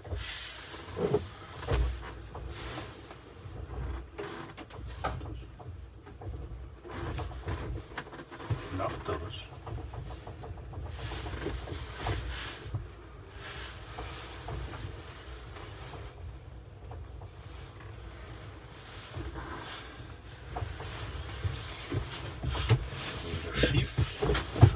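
Cabin noise of an Opel Rocks-e electric microcar reversing slowly out of a garage: a steady low rumble from the drivetrain and tyres, with occasional small knocks and clicks.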